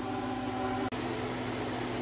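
Steady hum of a running appliance motor or fan, several even tones over a light hiss, broken by a single sharp click with a brief dropout just under a second in.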